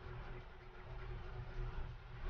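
Faint room tone: a low steady hiss with a little low hum, and no distinct sounds.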